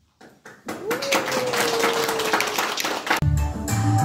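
An audience claps briefly after a recorded dance song ends, with a single long held tone over the clapping. About three seconds in, a new recorded music track with a strong bass line starts.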